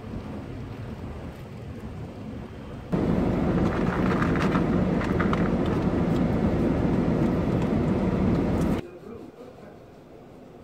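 Ambient sound cut together from short clips: moderate street-traffic noise, then, from about three seconds in, a much louder steady low rumble inside a car cabin, which cuts off abruptly near the end into quiet room tone.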